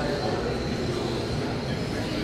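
Electric radio-controlled short-course trucks racing on a carpet track: a steady whir of motors and tyres with a faint constant high whine.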